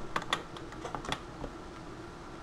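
A spoon stirring coffee grounds in a glass French press carafe, knocking and clinking against the glass in a quick run of light clicks that stops about a second and a half in.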